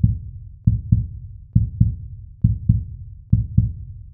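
Heartbeat sound effect: low, dull double thumps (lub-dub) repeating steadily, a little under one beat per second.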